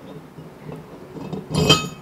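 Stainless steel disc brake rotor slid over a galvanized trailer hub, with faint handling scrapes and then one sharp metal-on-metal knock near the end as the rotor seats on the hub, ringing briefly.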